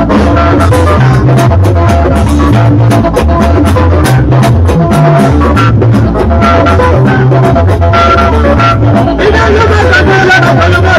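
Live Ika band music played loud through a PA system: a repeating deep bass line under steady drumming and guitar.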